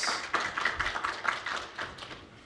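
Audience applauding, the clapping thinning and dying away toward the end.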